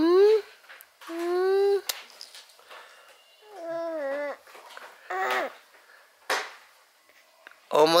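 Baby vocalizing during tummy time: two drawn-out, high-pitched coos or fussy whines, about a second in and again around four seconds, then a couple of short breathy grunts. An adult's soft rising "hmm?" comes right at the start.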